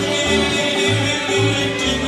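Live acoustic band playing an upbeat bluegrass-style gospel tune on banjo, acoustic guitar, electric guitar and upright bass, with the bass stepping between low notes about twice a second.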